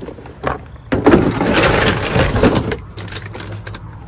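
Clatter and knocking of a plastic grooming caddy full of spray bottles being set down among tack in a pickup truck bed, with footsteps on gravel. The loudest stretch runs for about two seconds from a second in, then fades to a few light knocks.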